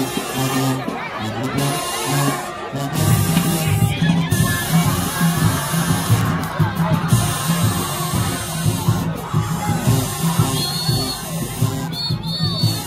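Marching band music with a repeating low brass line that fills out and gets busier about three seconds in, with crowd chatter over it.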